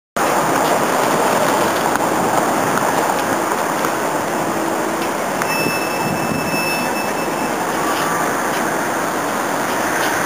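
Steady city street traffic noise from passing vehicles, with a thin high-pitched whine for about two seconds in the middle.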